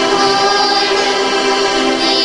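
A choir singing a liturgical chant in long held notes.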